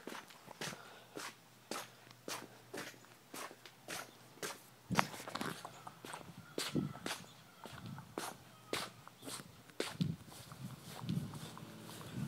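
Footsteps of a person walking at an even pace, about two steps a second, with a few heavier low thumps from the middle onward.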